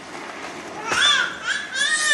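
A toddler's high-pitched shrieks, short at first and then one long wavering shriek near the end, with a sharp knock about a second in.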